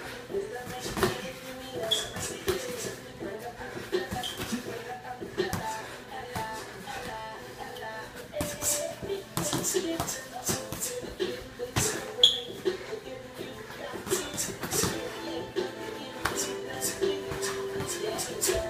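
Boxing gloves landing in quick, irregular punches on a sparring partner's guarding gloves and body, with shuffling feet, over background music.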